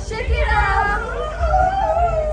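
Live pop concert music: a woman's singing voice sliding and holding notes over a steady bass beat.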